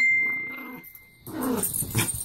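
Two dogs play-fighting: a loud bark right at the start that fades away over about a second, then a growl about one and a half seconds in.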